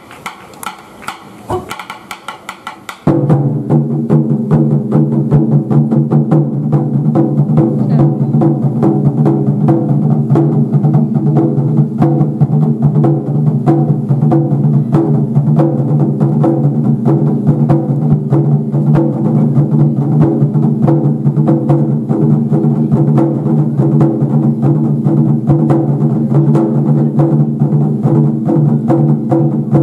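Japanese taiko barrel drums struck with wooden sticks: a few lighter, sharper strokes, then about three seconds in the ensemble breaks into loud, fast, continuous drumming with a deep, sustained boom.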